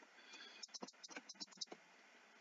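Faint computer keyboard typing: a quick, irregular run of key clicks that stops a little before the end.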